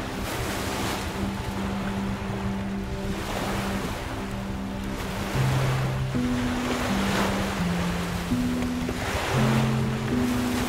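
Lake waves breaking and washing onto the shore in surges every few seconds, with wind, under a slow musical score of sustained low notes that gets louder about five seconds in.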